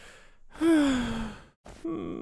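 An old woman character's long sigh: a short in-breath, then a voiced out-breath that slides down in pitch and fades. Near the end comes another short breath and the start of a second vocal sound.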